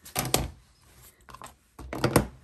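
Small hard craft supplies handled on a tabletop, making sharp clicks and knocks: a cluster of several just after the start, a few faint ones in the middle and louder ones near the end.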